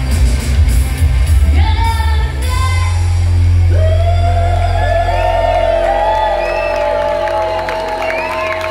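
Live pop band with a woman singing: the drumbeat stops about two seconds in and the band holds a long sustained chord under a long held sung note, with whoops from the crowd near the end.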